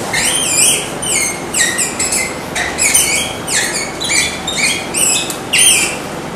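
Marker squeaking on a whiteboard as a word is written: about a dozen short, high squeals that slide in pitch, roughly two a second.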